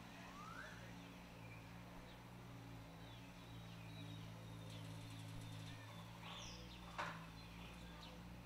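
Faint background with a steady low hum and a few scattered small bird chirps, and one sharp click about seven seconds in.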